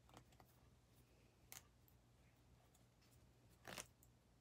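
Seam ripper cutting and breaking the stitches in a quilt seam: a few faint, short snips, the loudest and slightly longer one near the end as thread is snapped and pulled from the fabric.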